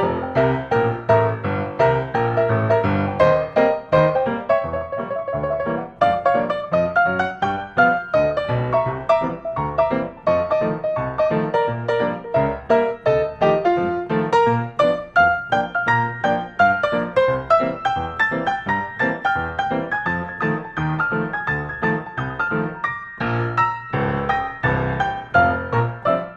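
Background piano music with quick, evenly paced notes and a steady beat.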